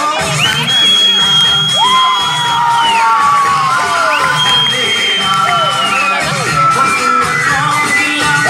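Recorded dance music with a steady beat played over loudspeakers, with a crowd of children cheering and shouting over it.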